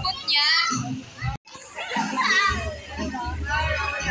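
Young children's voices calling and chattering, with a high, wavering child's cry about half a second in. The sound drops out for a moment just before halfway, then the voices carry on.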